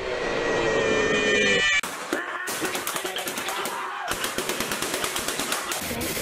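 Automatic gunfire: a fast, even string of shots at about ten a second, starting a couple of seconds in. Before it comes a short rising swell with a steady pitched tone in it.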